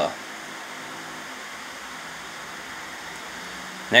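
Steady room noise: an even hiss with a faint hum underneath, unchanging throughout, with no distinct card-handling sounds.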